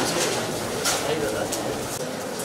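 Steady murmur of voices, with short dry rustles of paper ballot slips being handled and sorted out of a plastic tub.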